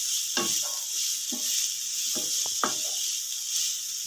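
Wooden spatula stirring and scraping grated coconut and shallots around a non-stick pan, in irregular strokes, over a steady sizzle of frying.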